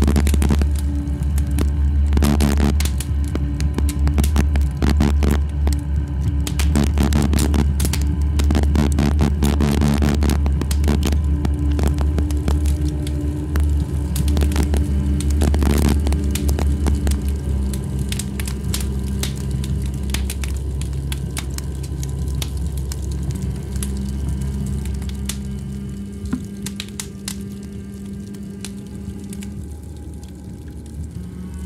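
Electronic drone music: a deep, steady bass drone with held tones above it and a dense crackling texture. The crackle thins out about halfway through, and the whole fades gradually toward the end.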